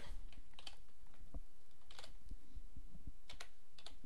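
Computer keyboard keys being typed in short irregular keystrokes while a date is entered in digits.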